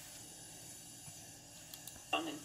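Near silence: a faint, steady background hiss of room tone.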